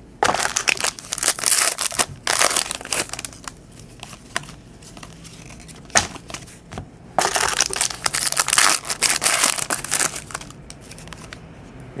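Plastic card-pack wrapper crinkling and crumpling in handling, in bursts of a second or two and one longer stretch of about three seconds, with a single sharp click in the middle.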